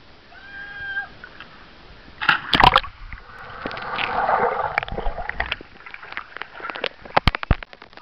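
A person's cannonball jump into a swimming pool: a loud splash about two and a half seconds in. It is followed by a muffled rush of bubbling water heard under the surface, then scattered sloshes and drips near the end.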